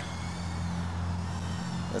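A steady low hum, with a faint high whine that drifts slowly in pitch: the small brushless motors and propellers of an FPV whoop quad under throttle.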